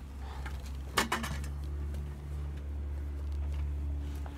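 A metal kick scooter clinks once, sharply, about a second in as it is put away, with a few faint knocks after it. Under it runs a steady low rumble.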